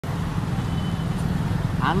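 Low, steady road-traffic rumble, with a motorcycle passing close at the very end. A voice starts just before the end.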